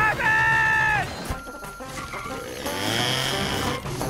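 Cartoon robot voice holding a drawn-out, falling call for about a second, then a whirring, grinding machine sound effect of the recycling robot at work, over background music.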